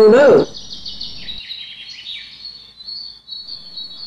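Birds chirping: a run of short, high chirps that each fall in pitch, then a thin, steady high trill near the end. A voice stops about half a second in.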